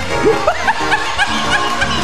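A man laughing into a handheld microphone, in short breaking bursts, over live worship music with held notes and a steady bass.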